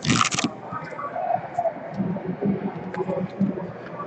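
Paper envelope handled and opened by hand: a brief loud rustling scrape right at the start, then irregular rustling and crackling of paper against the tabletop.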